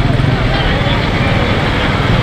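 Large outdoor crowd talking and calling out all at once, many voices overlapping, over a steady low rumble.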